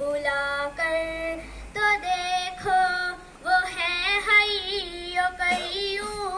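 A single high voice singing an Urdu hamd, holding long drawn-out notes that waver and turn in pitch, in several phrases with short breaths between them.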